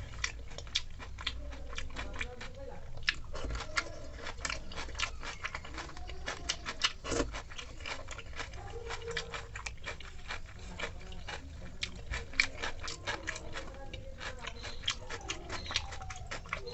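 A hand squelching and mashing water-soaked rice in a steel bowl, with a steady stream of irregular wet clicks and taps of fingers against the metal.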